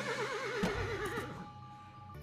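Horse whinnying: one long quavering call that dies away a little over a second in, over background music.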